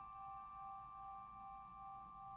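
Hand-forged tempered-iron tingsha ringing on after being struck, a faint steady cluster of pure high tones with no sign of dying away: the long sustain its maker claims passes one minute.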